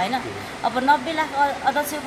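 Speech: a woman talking in an interview, over faint steady background noise.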